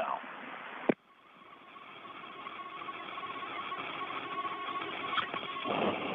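Hiss and static on an open radio communications loop. About a second in there is a click and the line drops almost silent, then the static slowly swells back with a faint steady high tone in it, and a louder rush of noise comes near the end.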